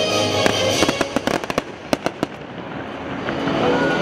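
Fireworks shells bursting in a quick string of about a dozen sharp bangs over about two seconds, over the show's music soundtrack. The music dips after the bangs and builds again near the end.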